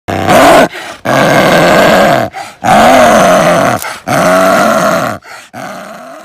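Snow leopard growling through a bared-teeth snarl in a run of loud, drawn-out calls: a short one, then three lasting about a second each, with short breaths between.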